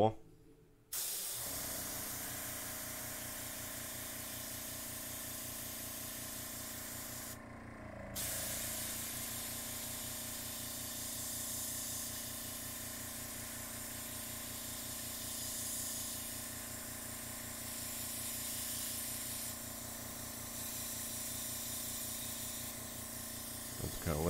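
PointZero gravity-fed airbrush spraying paint: a steady hiss of air from the nozzle that stops briefly about seven seconds in, then carries on. A steady low hum of the air compressor runs underneath.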